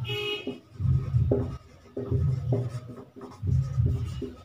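Marker pen writing on a whiteboard. A short high-pitched tone with overtones comes at the very start, and a low pulse repeats about every second and a quarter.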